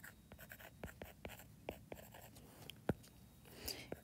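Stylus writing on a tablet's glass screen: a string of faint taps and short scratches as letters are drawn, with one sharper tap about three quarters of the way through.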